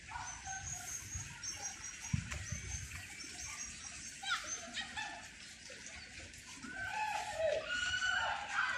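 Small birds chirping in short repeated high notes, over lower whining animal calls.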